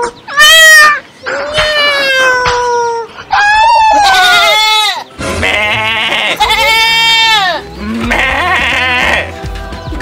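Goat bleating, about seven long wavering cries one after another. A music track with a beat comes in underneath about halfway through.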